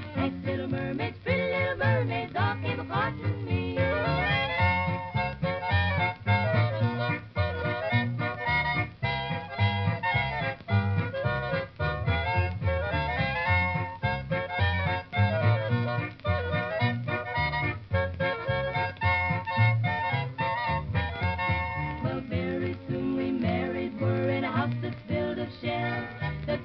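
Instrumental break of a 1940s country-pop song, played from a shellac 78 rpm record, with a steady beat and no sung words.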